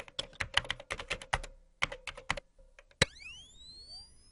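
Logo-intro typing sound effect: a quick run of keyboard key clicks. About three seconds in comes one sharp click, followed by several rising tones that sweep up and level off into a high ring.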